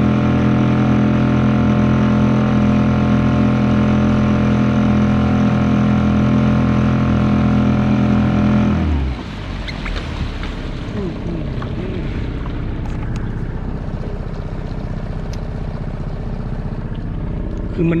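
Suzuki 2.5 hp outboard motor on a kayak running at a steady pitch, then falling away abruptly about nine seconds in, leaving a quieter bed of water and wind noise.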